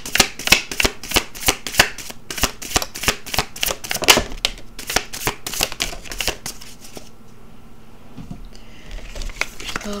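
A deck of tarot cards being shuffled by hand: a quick run of card slaps and riffles, several a second, that stops about seven seconds in.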